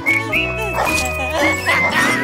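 Cartoon background music with a bouncing bass line and a melody, with a short, rough animal-like cartoon vocal effect about a second in.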